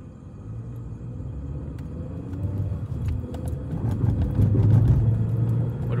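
A car's engine and road rumble heard from inside the cabin, growing steadily louder as the car pulls away and gathers speed, loudest about two thirds of the way through.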